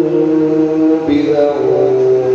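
An imam's voice intoning the prayer in long, held melodic notes, the pitch stepping down about a second in.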